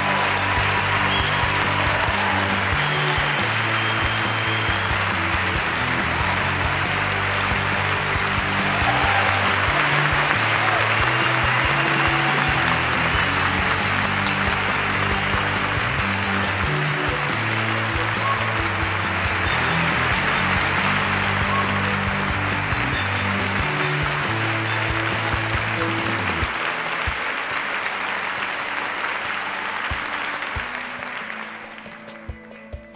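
A large audience applauding, with play-on music and its changing bass notes running underneath; both die down near the end.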